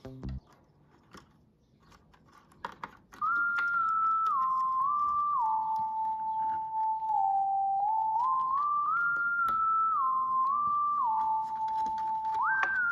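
A few small clicks of wire connectors being handled, then, from about three seconds in, background music: a single high melody line of held notes with short glides between them, like whistling.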